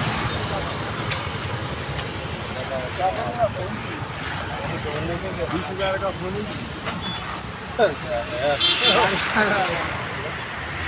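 Street noise: a steady low rumble of road vehicles, with scattered bits of men talking in a gathered crowd.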